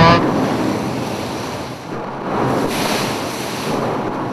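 Rushing wind and sea noise with no tones, swelling about two seconds in and fading toward the end.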